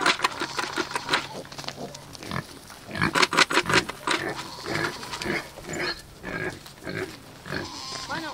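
A boar grunting in short, repeated grunts, with a quick run of them about three seconds in, then single grunts every half second or so.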